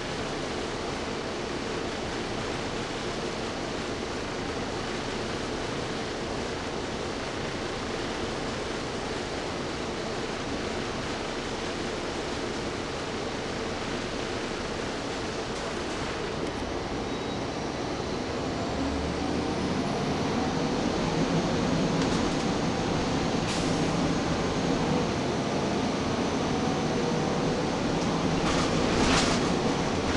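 Inside a Gillig Phantom diesel transit bus: a steady hum from the running bus, with its HVAC and cooling fans on. About two-thirds of the way through it grows louder and the engine note rises as the bus accelerates. A few sharp rattles come through, the loudest cluster near the end.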